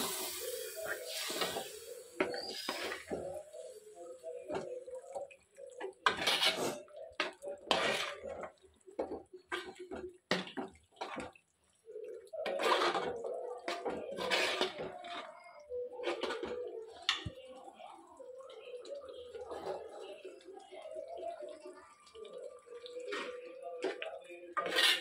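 Metal spoon stirring a thick, wet beef curry in a pot: sloshing, squelching stirring with irregular scrapes and clinks of the spoon against the pot.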